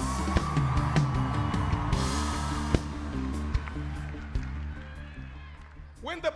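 Live church band music with held bass and keyboard notes and a few drum hits, fading down over the last few seconds.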